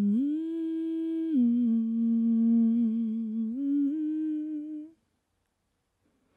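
A woman humming a slow melody a cappella: a few long held notes that step up, down and up again with a slight vibrato, stopping abruptly about five seconds in.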